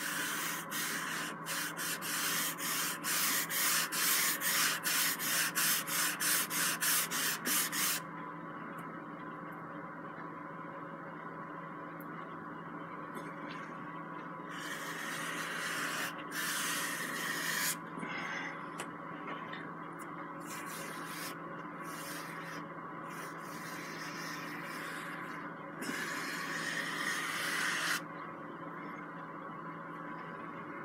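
Bristle paintbrush scrubbing oil paint onto a canvas. It starts with quick back-and-forth strokes, about two to three a second for the first eight seconds, then has two longer stretches of continuous brushing later on.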